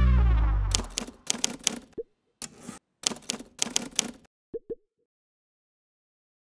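Sound effects for an animated logo. The last music chord dies away within the first second, then comes a rapid run of clicks in several short clusters. A few short pops, each falling slightly in pitch, come about two seconds in and twice more near four and a half seconds.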